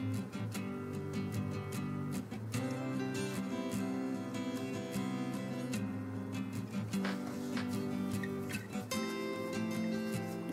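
Background music: an acoustic guitar playing a run of plucked notes.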